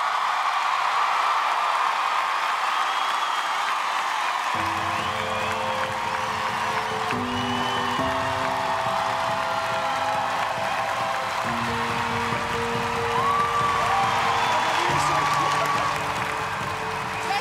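Studio audience applauding and cheering with whoops, starting abruptly: an ovation at the end of a performance. About four and a half seconds in, slow sustained music chords come in underneath the applause.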